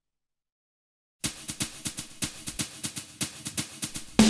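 Silence for just over a second, then a pop song's drum intro begins: a drum kit playing quick, even strokes, about five a second.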